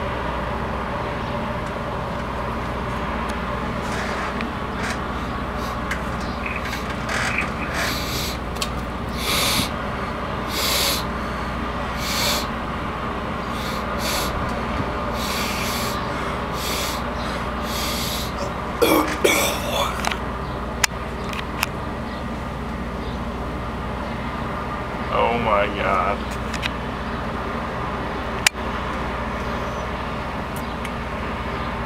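A man sniffing and snorting hard through his nose again and again while working a beaded dog-tag chain up his nostril and out through his mouth. Twice he lets out a short wavering, strained vocal sound, about 19 and 25 seconds in. A steady hum runs underneath.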